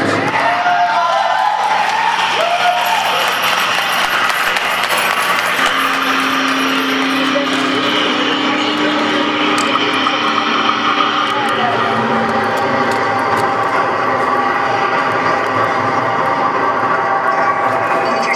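Electric bass played through a board of effects pedals, a loud, steady wash of distorted noise and drone. A few sliding pitches sound in the first few seconds, and a low note is held from about six seconds in to about eleven.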